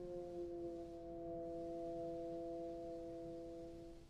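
Bass trombone holding one long, steady low note that stops right at the end.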